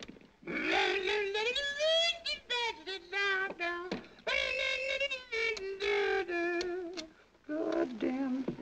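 A wordless singing voice carrying a tune, with gliding notes in the first half and longer held notes after a short break about four seconds in.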